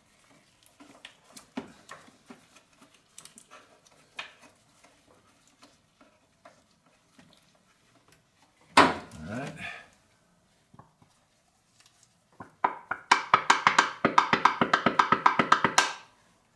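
Old-fashioned pump oil can squirting oil through a hose into a cylinder's spark plug hole for a wet compression test: a fast, even run of sharp clicks, about eight a second, through the last three seconds or so. Before it, soft clicks and rustles of the hose being handled, and a brief loud vocal sound about nine seconds in.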